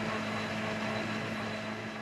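Intro logo sound effect: a steady, hum-like sound with a few held low tones, slowly fading.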